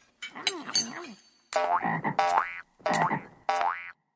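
Cartoon frog croaking, voiced as two double "ribbit"-like calls about a second and a half apart, after a short rising-and-falling sound near the start.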